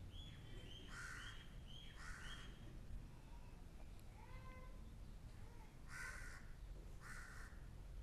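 Faint bird calls: four harsh calls in two pairs, each pair about a second apart, one pair about a second in and one about six seconds in, with thinner chirping notes between them.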